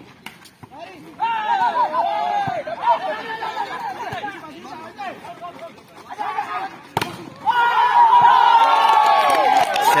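Volleyball players and onlookers shouting over one another during a rally. One sharp smack of a hand on the ball comes about seven seconds in, and the shouting grows louder after it as the point is won.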